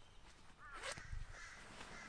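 A crow calls once, faintly, a little past the middle, over soft rustling and a light thump of clothing being handled.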